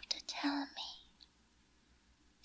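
A woman whispering close to the microphone for about the first second, then a quiet pause.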